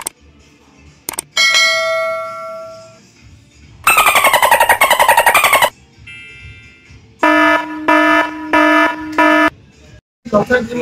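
A string of pitched sound effects: a ringing chime that fades away, then a fast warbling tone sliding down in pitch for about two seconds, then four short beeps in a row near the end.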